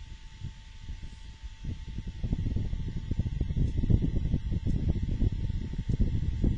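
Low, uneven rumbling noise that grows louder about two seconds in, over a faint steady high hum.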